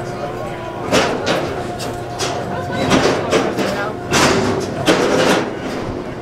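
Hydraulic squeeze chute with its pump humming steadily, broken by about four short hissing bursts, with voices in the background.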